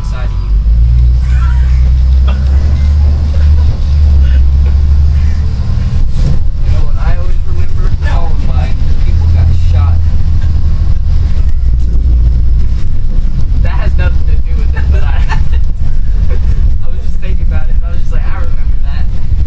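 A bus engine and road noise, a heavy low rumble that swells and eases, heard from inside the moving bus. Indistinct passenger voices come and go over it.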